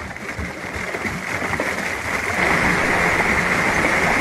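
Water splashing and pouring as a sunken motorcycle is hauled up out of a lake, water cascading off it; the rush grows louder about halfway through.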